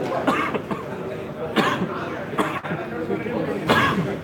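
People talking in the background of a badminton hall, broken by four short, sharp sounds spread roughly a second apart.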